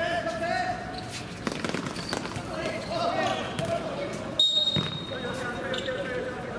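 Players' voices calling out and a few ball thuds on the hard court. Then, about four and a half seconds in, a referee's whistle gives one steady, shrill blast of about a second and a half.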